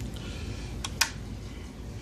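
Two short clicks about a second in, the second louder, from the aquarium's LED light switch being pressed as the light changes from white to blue. Steady low background noise throughout.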